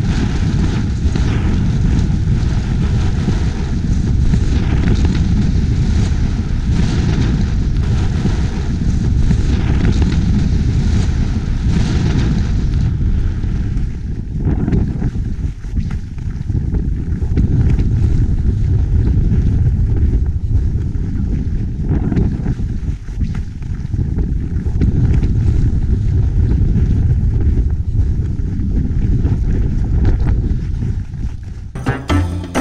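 Wind buffeting a GoPro HERO5's microphone during a fast downhill ski run: a loud, steady rumble and rush, its higher hiss thinning out about halfway through.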